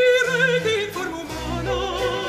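Contralto voice singing a Baroque opera aria with orchestral accompaniment: the voice enters at the start on a long held note with vibrato, lasting about a second, over a steady bass line.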